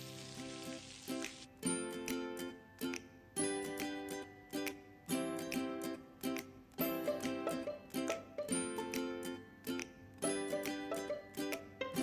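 Background music of a plucked-string instrument playing a repeating phrase. Under its opening second a faint sizzle of the quesadilla frying on the pan stops abruptly.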